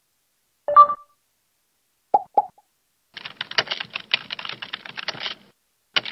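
Intro-animation sound effects: a short pop, then two quick blips, then about two seconds of rapid computer-keyboard typing clicks as a search query is typed, and a final click at the end.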